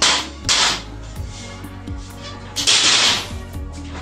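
Metal-framed ironing board being handled and folded, giving short noisy swishes and scrapes: two quick ones at the start and a longer one near the end, over quiet background music.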